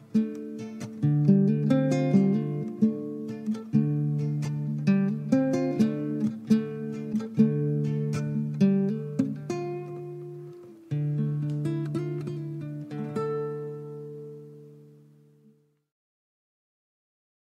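Nylon-string classical guitar played with a capo: an instrumental outro of picked chords and single notes, ending on a final chord that rings out and fades away near the end.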